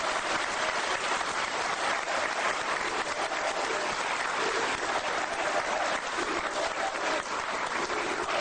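Audience applauding steadily, a dense, even clapping that does not let up.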